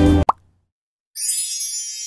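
Background music cuts off, followed at once by a short rising pop-like blip sound effect. After about a second of near silence, a high, twinkling chime sound effect begins and rings on.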